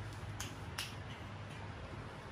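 Two sharp clicks a little under half a second apart as a hand handles a plastic-bodied cordless power tool on a shelf, over a faint steady low hum.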